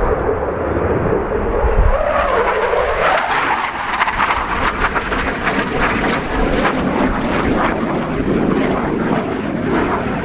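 A McDonnell Douglas F/A-18C Hornet's twin General Electric F404 turbofans manoeuvring overhead: loud, continuous jet noise that takes on a crackling edge from about three seconds in.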